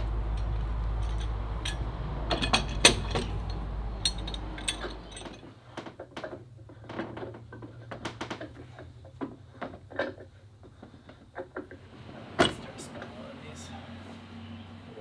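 Scattered knocks and clunks of a thick oak plank being pushed against a wooden boat hull's frames and clamped in place. The loudest knocks come about three seconds in and near the end, over a low rumble that stops about halfway through.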